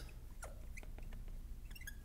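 Marker writing on a glass lightboard: faint, scattered ticks and short squeaks of the tip on the glass, with a quick cluster of squeaks near the end.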